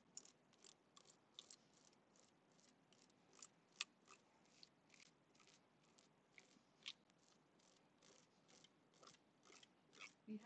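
Stencil brush working paint through a stencil onto a cabinet: faint, short scratchy brush strokes, roughly two or three a second, with one sharper stroke near the middle.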